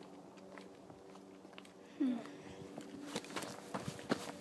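Hiking footsteps scuffing and crunching on gritty sandstone during a descent, with a few sharper steps near the end over a faint steady hum.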